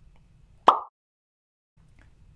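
A single short cartoon pop sound effect, the "poof" of an imagined character vanishing.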